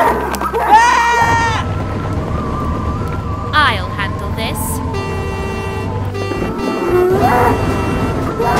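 A bull mooing once, a single long call about half a second in, over background music.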